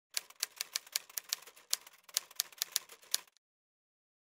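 Typing sound effect: a run of about sixteen sharp keystroke clicks at an uneven pace, roughly five a second, stopping a little after three seconds in.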